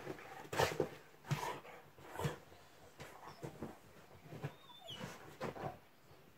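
A labradoodle digging and nosing into his bed's blankets and cushions: irregular bursts of rustling and scratching fabric, with a brief high whine about five seconds in.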